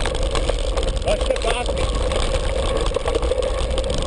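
Steady wind rumble on a helmet-camera microphone and mountain-bike riding noise on a dirt track, with a constant hum under it. A few short voice-like calls come about a second in.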